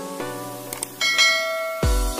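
Subscribe-animation jingle: a few plucked musical notes, two faint clicks, then a bright bell-like ding about a second in as the notification bell lights up. Near the end an electronic dance beat with heavy bass kicks in.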